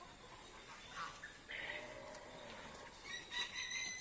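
Faint, distant bird calls: one about a second and a half in and another near the end, over quiet outdoor background.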